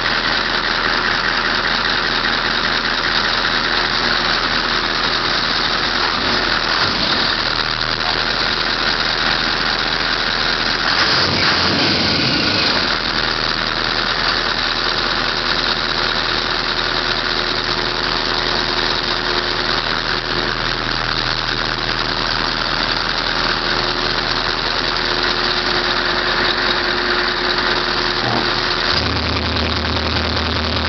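Heavy truck's diesel engine idling steadily, heard close to its side exhaust outlet. There is a brief surge about eleven seconds in, and the low hum shifts in pitch near the end.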